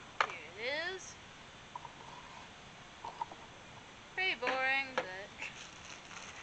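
A person's voice making two brief wordless vocal sounds: a short gliding one about half a second in and a longer held one about four seconds in, with a light click just after the start.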